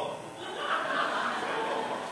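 An audience chuckling softly, a diffuse murmur of laughter that swells about half a second in.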